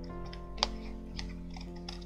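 Scissors cutting through folded card: a few short, sharp snips, the loudest about half a second in, over background music with held notes.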